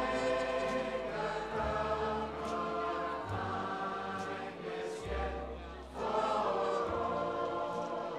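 Choral singing with soundtrack music: a group of voices holding long notes over a slow, stepwise bass line, swelling again about six seconds in.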